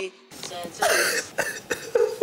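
A man laughing hard, in a quick run of short, breathy bursts, a few a second, starting a moment after a brief lull.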